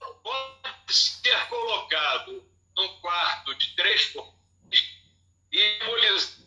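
A man's voice talking through a phone's speaker on a video call, over a poor connection, with a steady low hum beneath.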